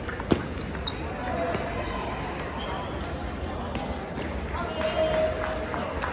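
Table tennis ball clicking off paddle and table in a rally, three sharp clicks in the first second, with the steady chatter of a crowded hall behind.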